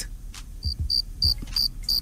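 Cricket-chirping sound effect: short, evenly spaced high chirps, about three a second, starting under a second in, with faint low thumps underneath.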